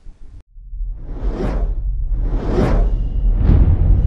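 Cinematic logo-intro sound effects: three whooshes about a second apart, each swelling and fading, over a deep rumble that builds toward the end.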